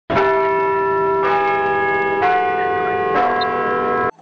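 Bell chime: four struck bell tones on different notes, about a second apart, each ringing on under the next.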